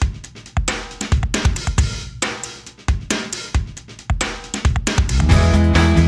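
Rock song intro on drum kit alone, with kick, snare and cymbals in a steady beat. About five seconds in the rest of the band comes in with sustained chords.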